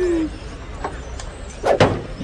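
Cartoon sound effects: a falling tone fades out at the start over a steady low background, then two sharp knocks come close together near the end as a price board is put up on a shop door.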